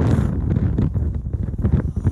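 Wind buffeting a phone's microphone: a loud, uneven low rumble.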